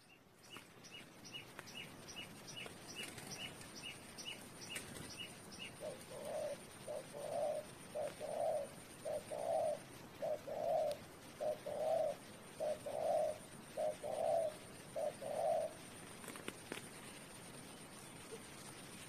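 Spotted dove cooing: about nine two-part coos, a short note then a longer one, roughly one a second, beginning about six seconds in. Before the coos there is a quick run of thin high chirps, and a faint steady high whine runs underneath.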